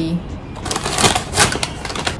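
Brown paper takeaway bag crinkling and rustling as it is handled and opened, a dense run of crackles starting about half a second in.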